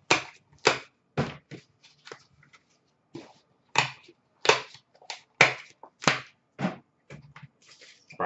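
A run of about fifteen short, sharp snaps and taps at uneven intervals, from trading-card packs, cards and their packaging being handled and set down on a counter.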